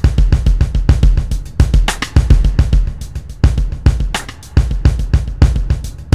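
Sampled drum kits playing back from a Native Instruments Maschine: a busy, steady pattern of kick, snare and cymbal hits. Two kits play the same dry-drums pattern at once, one copy nudged forward by an eighth note.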